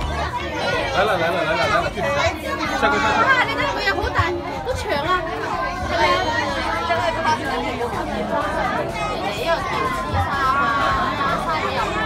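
Overlapping chatter of several people talking at once, no single voice standing out.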